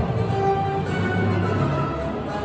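Background music playing over an arena's loudspeakers, with steady held tones and no voice.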